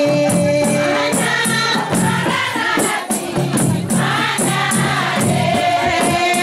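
Live group singing led by a woman's voice through a microphone, answered by a chorus of women's voices, over steady hand percussion with a rattling, shaker-like beat about twice a second.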